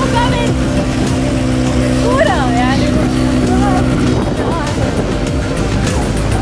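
Rally car engine running steadily, with a voice calling out briefly about two seconds in.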